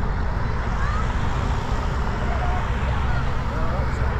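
Cycling team support cars with bicycles on their roof racks driving past in a steady procession: a continuous low rumble of engines and tyres on the road. Spectators chatter over it.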